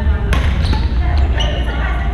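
A badminton racket striking a shuttlecock: one sharp smack about a third of a second in, then a few fainter clicks, in a reverberant gym over background chatter of voices.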